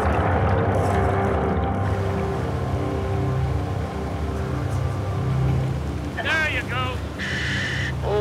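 Fast whitewater rushing steadily through a river chute, under sustained dramatic background music. About six seconds in come a couple of short, distorted bursts of a voice and a brief hiss.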